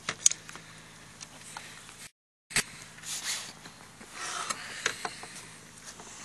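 Handling noise from a model helicopter being examined by hand: a few sharp clicks at the start, then rustling and scraping with scattered clicks. The sound drops out completely for about half a second around two seconds in.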